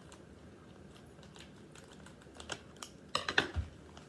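Plastic packaging crinkling and crackling in short, scattered clicks as a wrapped packet is handled and opened, with a louder run of crackles about three seconds in and a brief low thump just after.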